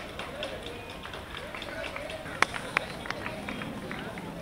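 Faint background chatter of people talking, with scattered short sharp clicks, the two loudest coming close together about two and a half seconds in.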